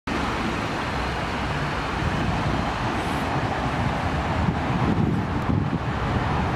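Steady outdoor background noise of road traffic, a continuous hum and rumble with no distinct events.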